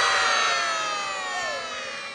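A group of young children shouting together in one long drawn-out cheer on cue, the many voices sliding slowly down in pitch and fading out.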